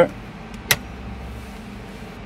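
A single sharp click of a dashboard switch being pressed to shut down the harvester's onboard computer, over a steady low hum that stops about three-quarters of the way through.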